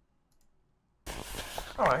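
Near silence with a few faint clicks, then room noise and a man's voice cut in suddenly about a second in.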